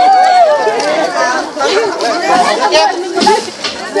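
Crowd chatter: several people talking and calling out over one another at once, with laughter near the end.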